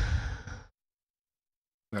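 A single loud breath from a person, under a second long, with no voice in it, taken just before speaking.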